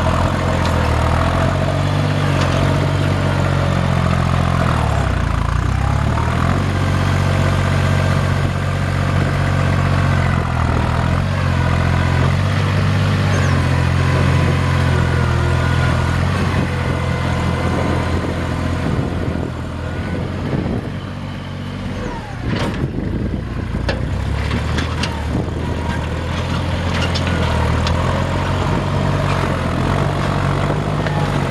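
Kubota L39 tractor's three-cylinder diesel engine running steadily. Its speed dips and picks up again about five seconds in, and it quietens for a few seconds around two-thirds of the way through, with a few knocks just after.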